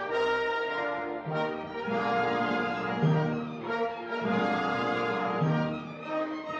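Live theatre pit orchestra playing, led by brass in held chords with horns and trombones prominent.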